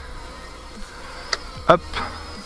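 MJX Bugs 5W quadcopter's brushless motors and propellers heard from the ground as a faint, steady high whine over a low hiss, with one short click a little past the middle.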